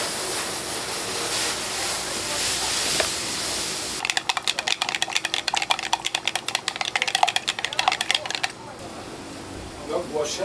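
Liquid poured from a tin into a plastic measuring cup, a steady hiss for about four seconds. Then a stick stirs it, scraping and clicking rapidly against the plastic cup for about four more seconds before stopping.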